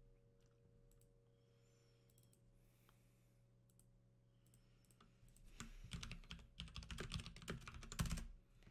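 Near silence with a faint steady electrical hum, then a quick flurry of light clicks and rattles from about five and a half seconds in to the end.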